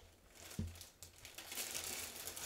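Clear plastic poly bag around a jersey crinkling as it is handled and turned, with a soft thump about half a second in.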